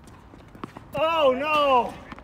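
A couple of sharp knocks, then a player's loud, drawn-out wordless cry lasting about a second, its pitch wavering and then falling away at the end, as the point is lost at deuce.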